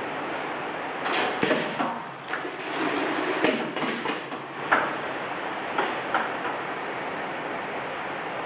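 Pneumatic multi-head paste filling machine working: bursts of compressed-air hiss from its valves and cylinders in the first half, with a few sharp clacks as the cylinders stroke, over a steady hiss.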